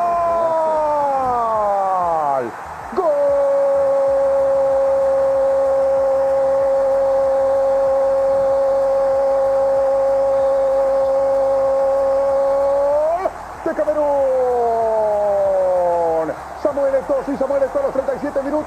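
Spanish-language football commentator's goal call, shouted as a goal is scored. The voice falls in pitch over the first two seconds, is held on one long steady note for about ten seconds, then slides down and breaks into shorter shouts near the end.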